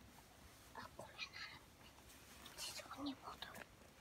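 Faint whispering in short, scattered bits.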